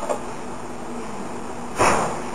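Steady room noise with a faint low hum, broken near the end by one short, loud burst of noise.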